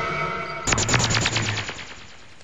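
Film sound effect: a held chord of steady tones, then about a second in a fast rattling run of sharp clicks, roughly fourteen a second, that fades out within about a second.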